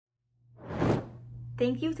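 A whoosh transition effect on a logo graphic, swelling and fading within about a second. A low steady hum follows under it, and a woman's voice begins near the end.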